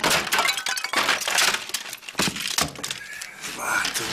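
A rapid clatter of crashing, breaking impacts, like things smashing.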